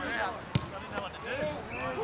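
An Australian rules football kicked once, a sharp thud about half a second in, with players' voices calling across the field.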